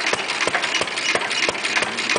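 Antique stationary gas engines running, with a sharp click about three times a second over a steady mechanical clatter.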